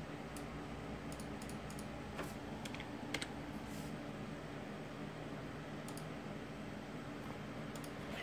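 Scattered taps on a computer keyboard, a few keys at a time with pauses between, over a steady low hum.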